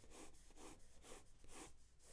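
Near silence: room tone with a few faint soft sounds.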